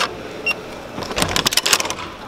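Electronic hotel keycard door lock: a click, a short electronic beep about half a second in, then a quick run of clicks and rattles from the lock and lever handle as the door is unlatched and opened.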